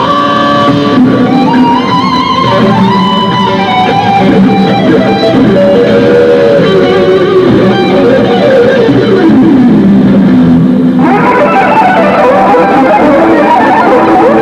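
Electric guitars played through amplifiers: a melodic lead line with string bends and vibrato over chordal playing. A little before ten seconds in the lead slides down in a long fall, and at about eleven seconds the sound turns suddenly brighter and fuller.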